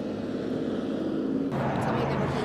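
Roadside traffic noise: a steady rush of passing vehicles, slowly growing louder. About one and a half seconds in it switches abruptly to a different outdoor background with a low steady hum.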